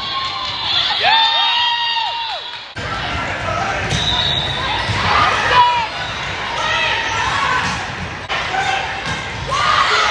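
Volleyball rally on a hardwood gym court: athletic shoes squeal in quick arching squeaks, several overlapping from about one to two and a half seconds in. Short knocks of the ball being played come through the murmur of players and spectators, with the echo of a large hall.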